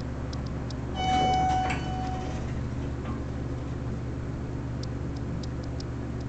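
Otis hydraulic elevator's arrival chime sounding about a second in: a bright bell-like ding followed by a fainter second tone, over a steady low hum in the car. Light clicks follow near the end as the car doors slide open.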